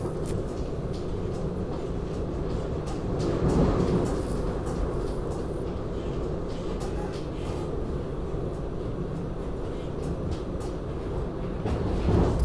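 Inside a SEPTA Regional Rail commuter car running along the line: a steady low rumble of wheels on rail and running gear. It swells briefly about three to four seconds in, with scattered light clicks over it.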